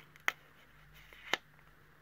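Two light, sharp clicks about a second apart as a metal Crop-A-Dile eyelet setter and a paper tag are handled, over faint room hum.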